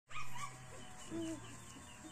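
Dog whining in two short whimpers: a higher, louder one near the start and a lower, briefer one just after a second in.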